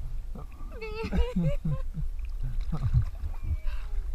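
Excited laughter and voices at the sea surface, high-pitched in places, over a steady low rumble of waves and wind on the camera microphone.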